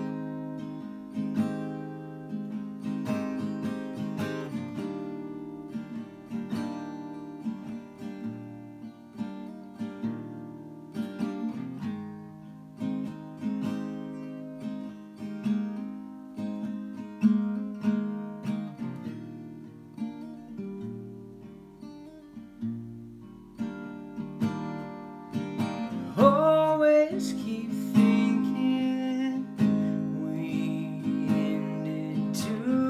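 Solo acoustic guitar playing a slow song intro of picked and strummed chords, each note ringing and fading. A singing voice comes in briefly near the end, the loudest moment.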